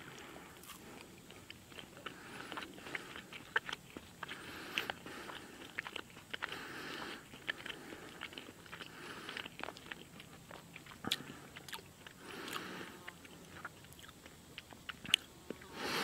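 A man biting into a veggie-burger patty from a vegan MRE and chewing it, quietly, with many small irregular clicks of the mouth.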